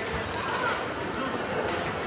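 Indistinct background voices over a steady murmur of room noise.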